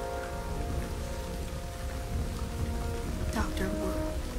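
Storm rain falling steadily over a constant low rumble, under film score music with long held notes. A short wavering sound that glides in pitch comes in about three seconds in.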